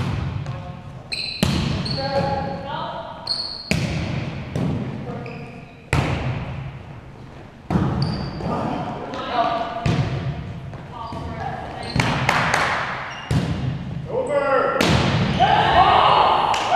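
Volleyball being struck during a rally: several sharp smacks a few seconds apart, each echoing through the hall. Players' voices call out between the hits and rise to shouting near the end.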